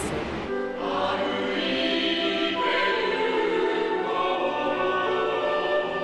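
Mixed choir singing slow, held chords, starting about half a second in.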